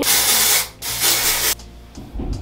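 An aerosol texture spray hissing in two bursts sprayed onto hair, each about three-quarters of a second long, the second following straight after the first.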